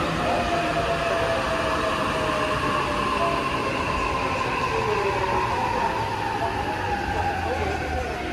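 JR East E233-series and E231-series electric commuter train braking into a station: the traction motors and inverters whine, their pitch slowly falling as the train slows, over steady wheel-on-rail noise.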